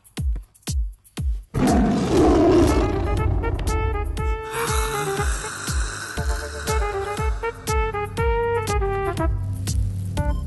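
Film background score with a steady drum beat; about a second and a half in, a loud roar breaks in, and then a melody plays over the beat.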